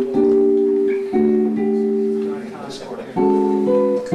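Archtop electric guitar played clean: three sustained chords struck about a second in, then again after three seconds. The lowest note steps down with each chord, a descending bass line under the harmony.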